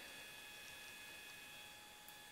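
Near silence: room tone with a faint steady high-pitched whine.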